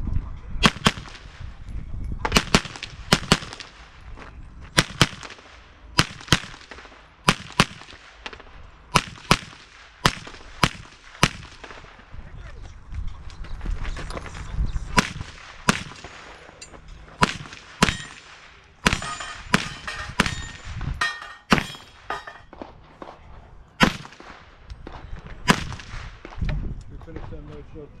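Gunfire from a shooter running a timed practical-shooting stage: a long string of sharp shots, often in quick pairs, with short pauses as he moves between shooting positions.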